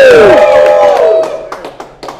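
Two men's drawn-out "woo" cheers trailing off, the pitch falling as they end about a second in, followed by a few light knocks or claps.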